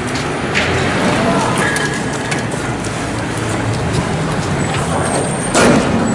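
Police vehicles running close by amid indistinct voices, as one steady noisy din, with a loud sudden burst about five and a half seconds in, as a firework strikes at the vehicles.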